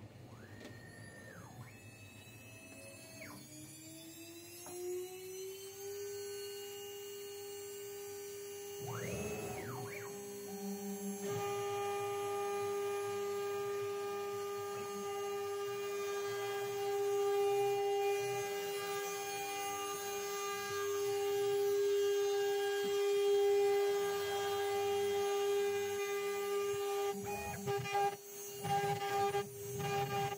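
Holzprofi 6090 CNC router: the stepper-driven axes whine as they travel, each move rising in pitch, holding and falling. The spindle spins up with a rising whine about four to six seconds in and then runs steadily. Near the end the sound breaks into short bursts as the bit drills into the workpiece.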